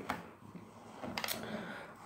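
A quiet pause in a small room, with two faint short clicks about a second apart.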